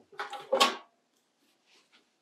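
Brief clatter of a palette tray being moved on the table, within the first second.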